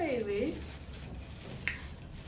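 Thin plastic shopping bag being handled and opened, with one sharp plastic snap about a second and a half in.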